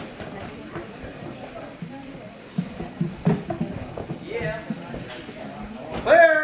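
Footfalls and thuds of a person running and landing on padded obstacle-course platforms, with a cluster of sharp knocks in the middle, over the background chatter of people in a large gym.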